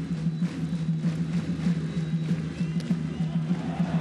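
Stadium fans' cheering drums beating a quick, steady rhythm over the crowd noise in the stands.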